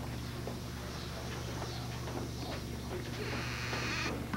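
Faint, irregular footsteps and shuffling on carpeted stairs over a steady low electrical hum.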